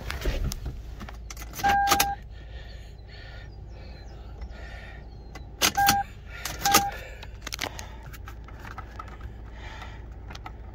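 Keys jingling and scattered clicks of handling in a parked car's cabin, with three short electronic beeps, the first about two seconds in and a pair around six to seven seconds in, each starting and ending with a click.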